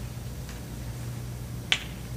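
A single sharp click near the end, over a steady low hum.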